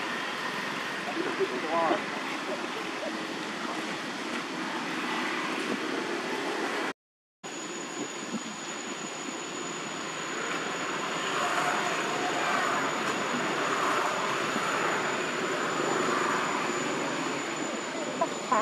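Steady outdoor background noise with faint, scattered high calls. A brief dead-silent gap about seven seconds in is an edit. After it a thin, high steady whine runs on under the noise.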